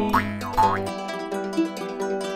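Serbian folk-song instrumental: a jaw harp (drombulja) plays with wah-like sweeping overtones over its steady low drone, stopping about a second in. Plucked strings and held chords carry on after it.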